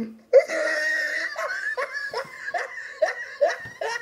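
A person laughing hard in a string of short bursts, about two or three a second, starting just after a brief pause.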